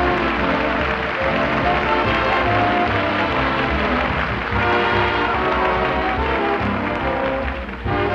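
A dance orchestra playing an instrumental number on an old radio broadcast recording.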